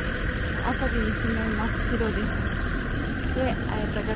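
A diesel railcar standing at the platform with its engine running steadily at idle, a constant low drone.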